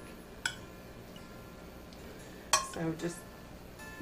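A metal spoon clinking against a glass trifle bowl as cubes of pound cake are spooned in: one sharp clink with a faint ring about half a second in, and another near the end.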